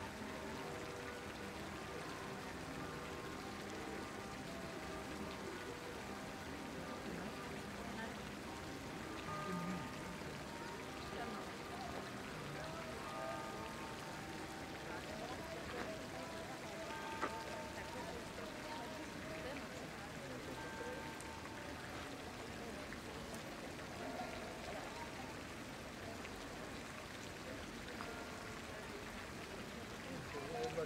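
Steady splashing of a pond fountain's water jets, with faint voices in the background.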